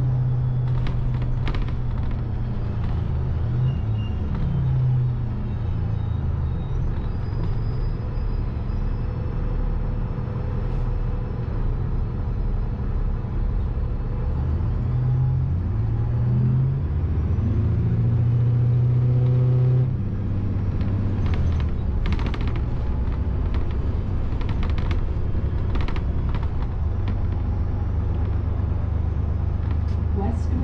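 City transit bus engine and drivetrain heard from inside the cabin: a low drone that rises and falls in pitch as the bus changes speed, with a sudden drop in pitch about two-thirds of the way through. Scattered rattles and clicks from the bus interior.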